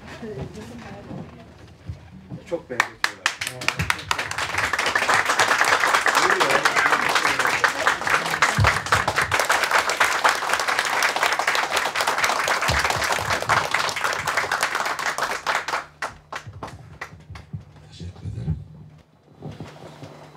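A crowd clapping: a few separate claps about two to three seconds in swell into steady applause that lasts about ten seconds, then thin out to scattered claps and stop shortly before the end.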